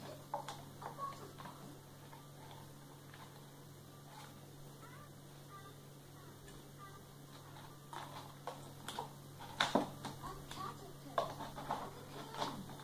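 Chunky wax crayons clicking and clattering against a clear plastic cup, a cardboard crayon box and the tabletop as a toddler handles them. The knocks come in scattered bunches, sparse in the middle and busiest later on, with the loudest clatter about ten seconds in.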